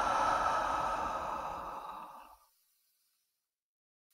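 A woman's long, audible sigh out through the mouth, a deliberate relaxation breath, fading away a little over two seconds in; then complete silence.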